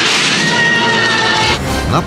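Film soundtrack: sustained, droning music with high wailing cries layered over it, which cuts off abruptly about a second and a half in to a different, noisier background.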